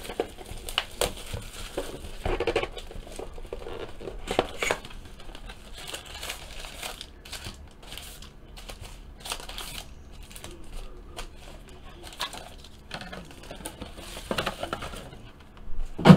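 Clear plastic shrink wrap torn off a trading-card box and crumpled by hand, an irregular crinkling and crackling, then rustling and light taps as the cardboard box is opened and its card packs are taken out.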